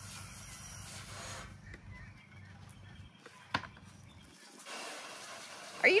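Water spraying from a garden hose nozzle, a steady hiss that drops away after about a second and a half and comes back near the end. A single sharp click about three and a half seconds in.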